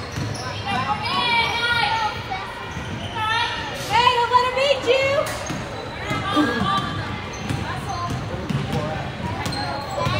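Basketball bouncing on a hardwood gym floor, with shouting voices ringing through the large hall, loudest about four seconds in.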